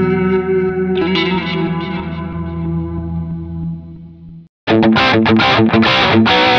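Electric guitar played through BIAS FX 2 amp-modelling software: a chord, then another about a second in, left to ring and fade. About four and a half seconds in it cuts off, and a brighter, distorted guitar takes over with choppy, rhythmic chords on a modelled '69 Plexi amp.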